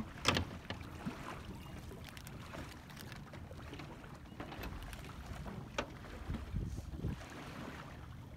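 Water lapping against the hull of a small fishing boat, with a low rumble and scattered light knocks and clicks. The sharpest knock comes a fraction of a second in.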